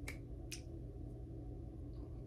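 Two short, sharp clicks about half a second apart, over a steady low hum.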